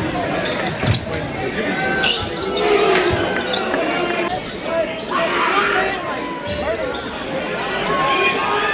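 Basketball being dribbled on a hardwood gym floor, a series of bounces, with voices from players and crowd echoing in the gym.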